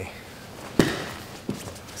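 Two grapplers scrambling on a padded mat during a hip bump sweep attempt: one sharp thump of a body hitting the mat about a second in, a smaller knock shortly after, and a faint rustle of gi fabric.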